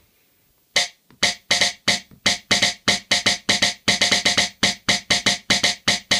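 Snare drum sound from a Teenage Engineering OP-1, triggered by drumsticks striking a TS-2 Tap piezo sensor. The hits come in a fast, fairly even run of about four to five a second, starting just under a second in.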